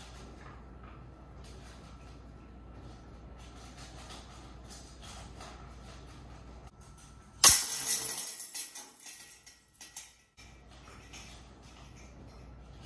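A putter disc strikes the hanging chains of a disc golf basket once, about seven and a half seconds in, and the chains jingle loudly, then fade out over about two seconds. Before the hit there is only faint room tone.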